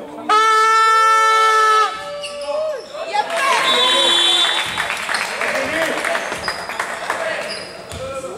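A loud horn blast in a sports hall, starting about a third of a second in and holding one steady pitch for about a second and a half; a second note carries on a little longer and slides down in pitch as it dies away. About three and a half seconds in comes a short high whistle, followed by a basketball bouncing and players' footfalls on the court.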